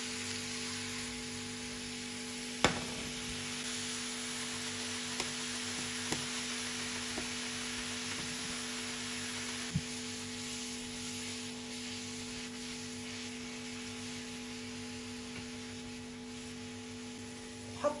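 Grated zucchini and tomato frying in olive oil in a pan, a steady sizzle while being stirred, with a few sharp knocks of the spatula against the pan, the loudest about three seconds in.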